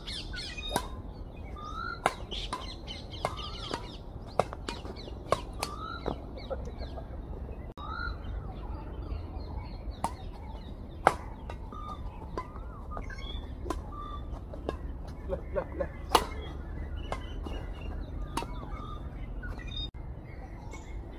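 Badminton rackets striking a shuttlecock during a rally, sharp pops irregularly about once a second, with birds chirping throughout. A short laugh near the end.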